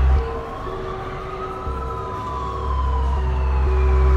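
Emergency vehicle siren wailing in one slow rise and fall of pitch, with a second, higher tone sliding downward.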